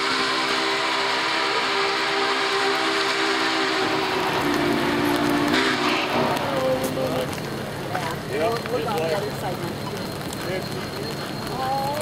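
Union Pacific 844's steam chime whistle sounding one long blast of several notes together, with a hiss of steam over it, cutting off about six seconds in. A quieter, lower steady sound of the approaching locomotive continues after it.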